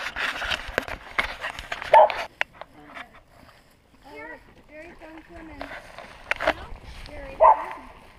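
A dog barks twice, briefly, about two seconds in and again near the end.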